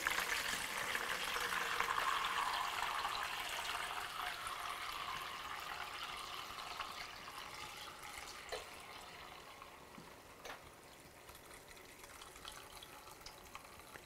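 Plant dye liquid pouring from a stainless steel pan through a metal sieve into a plastic bowl. The stream splashes steadily at first, then thins and fades to a light trickle as the pan drains, with a couple of faint clinks near the middle.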